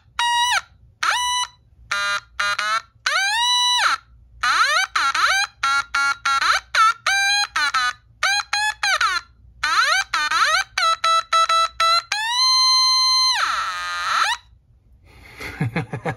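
A LoBlast Bleepler, a small variable-frequency tone generator, played through its built-in speaker. It gives a quick string of short electronic beeps, each gated by the push button and swept up and down in pitch by the knob, sounding like a video game. Near the end comes one longer held tone, then a falling sweep.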